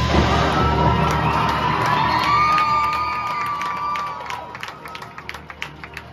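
High-school marching band playing a loud, held passage with crowd cheering over it; the sound falls off sharply about four seconds in, leaving quieter playing with sharp percussive taps.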